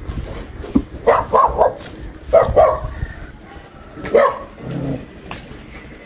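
A dog barking in short runs: three quick barks about a second in, two more a moment later, and a single bark near the four-second mark.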